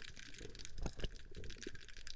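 Underwater ambience: a steady crackle of many faint, irregular clicks, with a few louder ticks around the middle.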